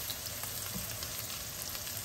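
Chopped onion and garlic sautéing in hot oil in a frying pan beside strips of beef, making a steady, even sizzle.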